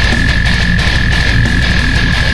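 Brutal death metal music: fast, dense drumming and heavy distorted guitars, with a single high-pitched tone held steady over it.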